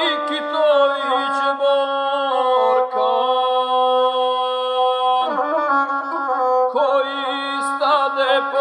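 Gusle, the bowed single-string folk fiddle, playing the nasal, ornamented line of an epic song, with a long held note in the middle.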